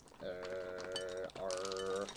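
A man's drawn-out "uhhh" held on one steady pitch, in two long stretches with a short break about halfway, while he slowly pours cereal into a measuring cup.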